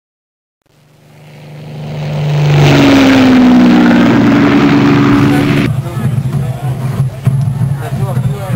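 A racing-car engine sound fades in from silence, loud and steady, its pitch sliding slowly down as if passing by. It cuts off abruptly a little before six seconds in, giving way to a rougher, steady low hum.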